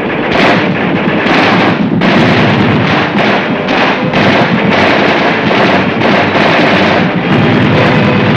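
Massed infantry small-arms fire on a firing range: many weapons shooting at once, shots packed densely and overlapping without a break, over background music.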